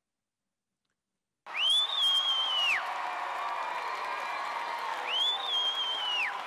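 Edited TV soundtrack: dead silence for the first second and a half, then a noisy crowd-like background with a high whistle-like tone over it. The tone rises, holds for about a second and falls, and comes twice, about three seconds apart.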